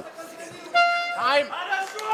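A timekeeper's horn sounds one short steady note, about half a second long, marking the end of the round. Shouts rise as it stops.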